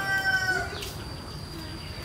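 A rooster crowing: one long held call that ends about three quarters of a second in. A steady high whine continues underneath.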